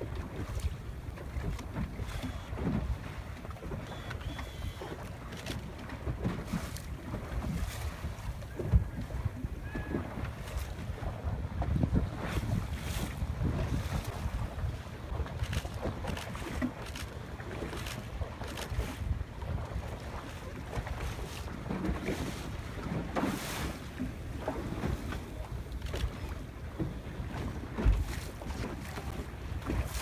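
Wind noise on the microphone over a small boat on choppy sea, with water slapping irregularly against the hull.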